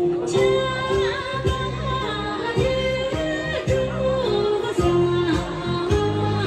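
Tibetan gorshey folk song for circle dancing: a singing voice with sliding, ornamented pitch over a steady instrumental beat, the voice coming in just after the start.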